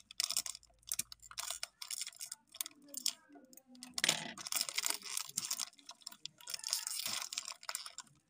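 A foil-lined plastic snack wrapper being crinkled and pulled open by hand, crackling in irregular bursts.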